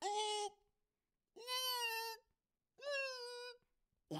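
A person's voice making three drawn-out, high-pitched vocal calls, each under a second long and held at a fairly steady pitch, with short silences between them.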